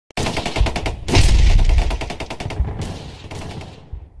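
Intro sound effect of rapid machine-gun-like fire: a fast run of sharp cracks, many per second, with deep booms under them, the loudest stretch from about a second in. It fades away over the last second.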